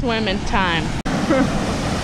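Short bits of a boy's voice over a steady rushing noise of falling water from a waterfall and pool, broken by an abrupt cut about halfway through.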